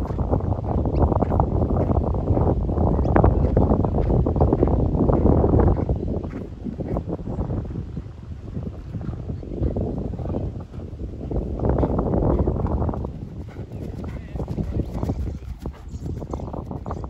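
Thoroughbred horse cantering on grass, its hoofbeats heard over heavy noise.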